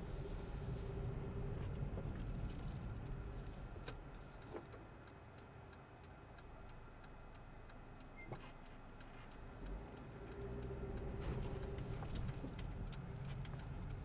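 Cabin of a 2005 Honda Civic coupe on the move: the turn-signal indicator ticking steadily, a few ticks a second, over the rumble of the road and the 1.7-litre four-cylinder engine. The rumble grows quieter in the middle and rises again near the end.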